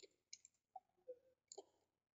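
Faint computer mouse clicks, five in quick succession over about two seconds.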